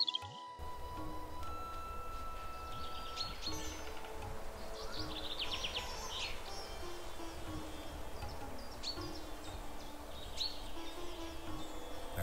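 Soft ambient music with long held notes over a steady background rush, with birds chirping now and then.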